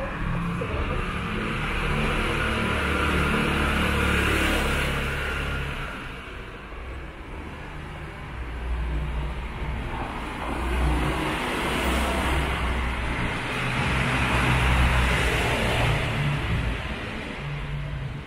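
Motor vehicles passing on a narrow city street over a low engine hum, the traffic noise swelling twice: about four seconds in and again about fifteen seconds in.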